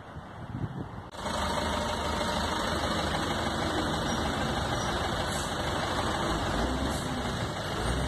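Engine and road noise of a moving truck, heard from its open cargo bed, starting suddenly about a second in and then running steady and loud.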